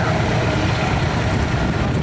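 Modern diesel farm tractor driving past close by, pulling a passenger tram, with a steady low engine rumble.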